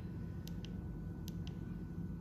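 Low steady room hum with two pairs of faint light clicks, typical of the buttons on a handheld Ryobi Tek4 inspection scope being pressed.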